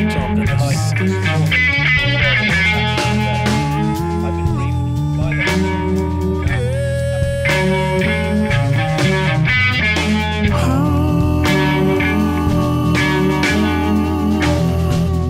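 Blues-rock trio playing an instrumental passage: electric guitar holding long lead notes that bend in pitch, over bass guitar and drums.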